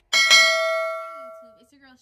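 A single bell-like ding chime from a subscribe-button animation. It strikes once and rings with several steady tones, fading out over about a second and a half.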